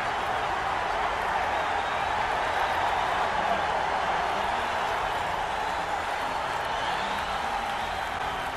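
Basketball arena crowd making a loud, steady din, with no single voice standing out.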